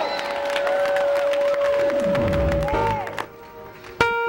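A gospel choir's song ends on a long steady held keyboard note, with the congregation clapping and cheering underneath. The note stops and the sound dies away near the end.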